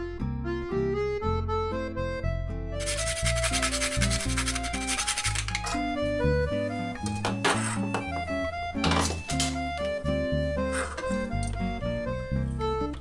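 Background music playing throughout, over which a whole nutmeg is scraped on a metal grater: a continuous rasping run of about three seconds, then a few shorter grating strokes.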